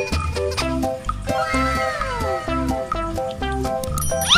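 Background music with a bouncy, repeating beat. About a second in, a long falling glide sound effect slides down over a couple of seconds.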